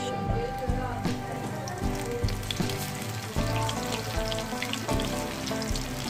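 Spinach pakora batter frying in hot oil in a steel karahi: a steady crackling sizzle and bubbling, with background music playing over it.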